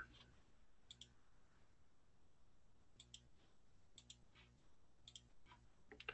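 Near silence with faint computer mouse clicks: a few quick double clicks spread a second or two apart.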